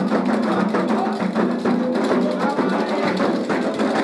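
Candomblé atabaque hand-drum ensemble playing a dense, driving rhythm with a sharp clicking bell-like pattern over it. This is the drumming for the orixá's dance, the rum for Ogum.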